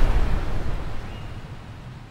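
Low rumble of an explosion dying away, loudest at the start and fading out steadily.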